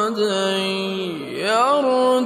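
A man reciting the Quran in a melodic tajweed style, drawing out long held notes. About halfway through his voice falls low and then climbs back up into the next phrase.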